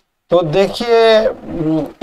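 A man speaking: the word "to" ("so") drawn out into a long held vowel.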